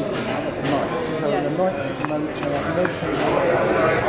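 Café hubbub: overlapping conversation from many people around the room, with a few light sharp clinks about halfway through.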